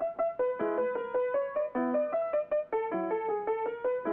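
Piano music on the soundtrack: a melody of short, evenly spaced notes over lower accompanying notes.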